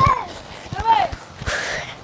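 Short shouted calls from people's voices, two brief rising-and-falling cries, with a few low thumps underneath.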